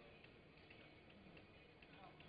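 Near silence: faint room tone of a large hall, with a few faint small ticks.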